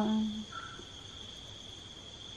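A held sung note of Tày khắp singing trails off about half a second in; then a steady, high-pitched insect trill, of a cricket kind, over the soft rush of a shallow stream.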